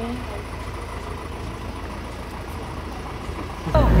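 Vehicle engine idling, a steady low rumble heard from inside the cab. Near the end the rumble suddenly grows much louder and voices start.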